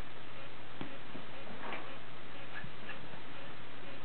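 A puppy and a kitten playing: scattered light taps and scuffles, over a steady hiss and a low hum.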